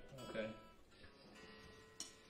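Faint guitar strings left ringing after being plucked, a few steady notes holding and slowly fading, with a short spoken word near the start.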